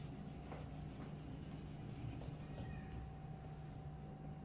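Faint squeaking and rubbing of a hand wiping marker off a small whiteboard, over a low steady hum.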